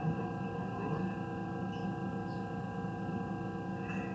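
Steady, droning background music made of sustained, held tones, with no clear beat.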